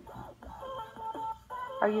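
Quiet electronic music of short stepped notes from an Alexa smart speaker waiting for an answer in its game, then the speaker's synthesized Alexa voice starting near the end.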